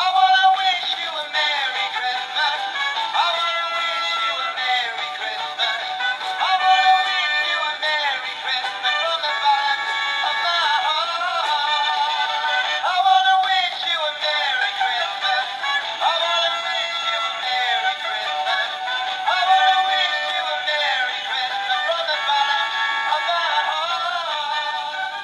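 An animated plush Chihuahua toy with a guitar plays a song with singing through its small built-in speaker. The sound is thin, with almost no bass, and runs on without a break.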